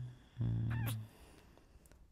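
A man's low, steady hum, 'mm-hmm', in two parts: the first trails off just after the start, the second lasts well under a second. A brief higher wavering sound rides over the second hum near its middle.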